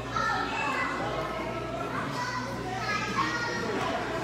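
Indistinct chatter from several children's voices in a large gym hall, with no single clear voice. A steady low hum runs underneath.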